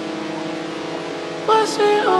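Opening of a trap song: a steady held synth chord, with a male voice starting to sing about one and a half seconds in.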